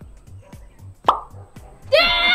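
Background music with a soft, steady low beat. About a second in comes a single loud pop sound effect with a quick upward swoop in pitch.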